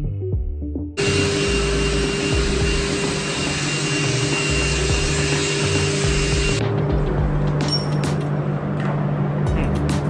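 A loud, steady rushing noise with a low hum, like a machine running, starts abruptly about a second in. Its hiss thins about seven seconds in, and a few sharp clicks follow.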